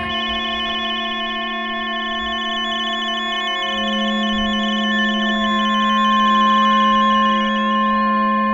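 Shortwave radio sounds layered into electronic music: several steady whistling tones, with a higher tone keyed rapidly on and off like a data signal. A low tone gets louder about halfway, and from about five seconds in a tuning whistle glides up and down in pitch.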